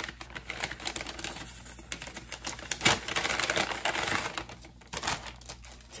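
Paper and plastic packaging rustling and crinkling as a paper gift bag is opened and the plastic packet inside is handled: a rapid, uneven run of crackles and clicks, busiest in the middle.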